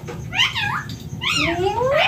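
Indian ringneck parrot vocalizing: two loud calls, each sweeping up and then down in pitch.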